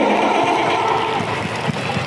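Audience applauding, a dense, steady wash of clapping that thins slightly near the end.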